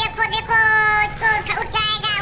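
A child's high-pitched voice singing a few held notes, each broken off by short gaps.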